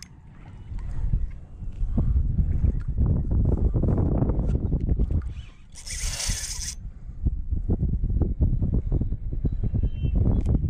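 Wind buffeting the microphone over choppy water: a heavy low rumble that swells about a second in and stays loud. A short hiss comes about six seconds in.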